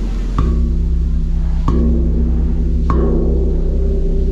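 Large bossed Thai temple gong struck three times with a wooden mallet, about a second apart, each stroke adding to a deep, sustained ringing hum that carries on undamped.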